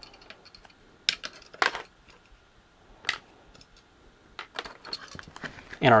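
Small plastic clicks and taps as fan jumper-wire connectors are pushed onto a Raspberry Pi 4's GPIO pins and the plastic case is handled, with a few sharper clicks about one, one and a half and three seconds in.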